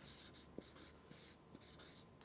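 Marker writing on a large paper chart pad: a quick series of short, faint scratchy strokes as the letters of a word are written.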